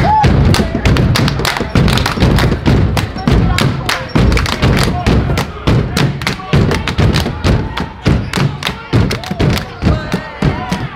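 A cheer squad clapping hands in a fast, uneven rhythm amid heavy thumps, with voices chanting over it, echoing in a gym.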